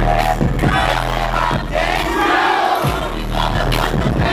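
A live hip-hop band playing loudly, with heavy bass, drum hits and voices over the top. The bass drops out briefly about two seconds in, then comes back.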